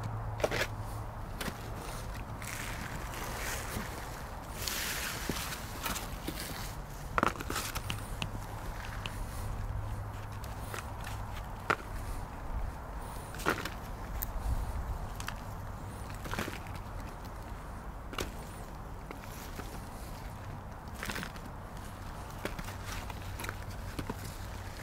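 Gloved hands digging through and breaking apart a block of potting soil on a plastic tarp: soil crumbling and rustling, with scattered sharp knocks as red potatoes are picked out and dropped into a plastic saucer. A steady low hum runs underneath.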